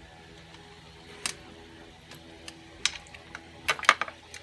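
A few sharp clicks and taps of a plastic charging cradle and USB cable plug being handled: one about a second in, another near the three-second mark, and two close together near the end. A faint steady hum runs underneath.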